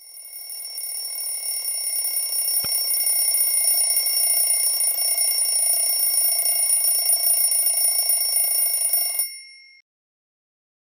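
Steady electronic sound of several high, unchanging tones over a hiss. It fades in over the first few seconds, has a single click about two and a half seconds in, and cuts off suddenly about nine seconds in.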